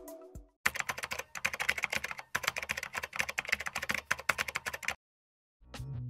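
Rapid, irregular clicking of typing on a computer keyboard for about four seconds, stopping abruptly.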